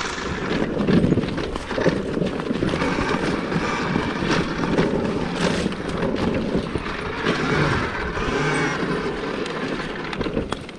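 2023 KTM Freeride E-XC electric dirt bike riding a dirt forest trail: continuous tyre and rolling noise over dirt, leaves and twigs, with frequent knocks and rattles over bumps.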